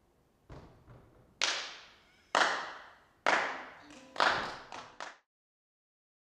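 Slow hand claps echoing in an empty theatre auditorium: two soft claps, then loud ones about a second apart, the last few coming quicker. They stop abruptly a little after five seconds in.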